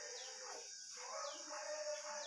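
Faint background in which a bird gives a short falling chirp about once a second, three times, over a steady high hiss.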